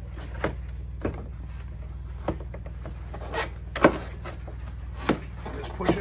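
Clear plastic windshield being pressed onto the hood of a 2022 Ski-Doo MXZ XRS 850 snowmobile, its three mounting nubs popping into place: a series of sharp plastic clicks and knocks about a second apart, the loudest a little before four seconds in.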